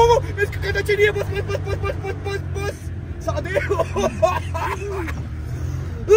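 Suzuki Mehran's small engine and the road heard from inside the cabin as a steady low drone while the car is driven fast, with a passenger's untranscribed voice crying out over it.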